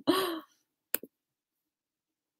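A person's short, breathy laugh lasting about half a second, followed by a single short click about a second in.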